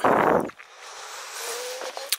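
A brief loud rush of air on the microphone, then a faint steady outdoor hiss.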